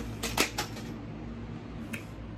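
A few light clicks and clinks of small hard objects being handled in the first half second, and one more near the end, over a steady low hum.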